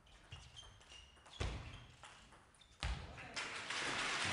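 Table tennis rally: the ball clicks off bats and table with short pinging rings, and two heavy thuds stand out. In the last second or so, applause breaks out from the crowd in the hall.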